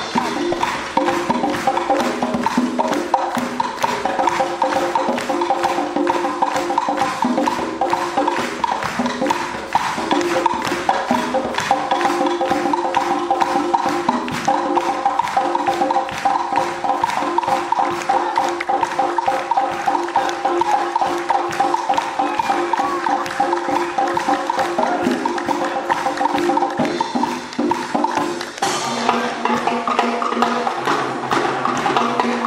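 Wind band playing a mambo, with held wind chords over dense Latin percussion: a fast run of woodblock-like clicks and hand drums. Near the end the harmony changes and lower brass notes come in.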